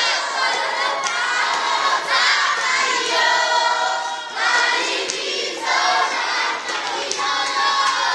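A large group of children and teenagers singing together as a choir, in sung phrases broken by short pauses.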